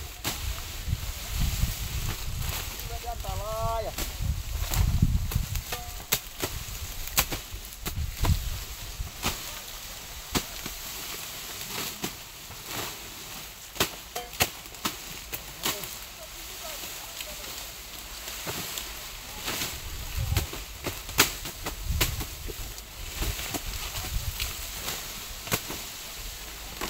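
Cane knives chopping through green sugarcane stalks: irregular sharp chops and cracks, sometimes a couple a second, amid rustling cane leaves and straw.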